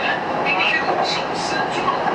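Metro train running at speed, heard from inside the passenger car as a steady rumble and rush of the running gear, with people's voices talking over it.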